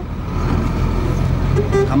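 A vehicle engine runs steadily close by, and a horn gives a brief toot near the end.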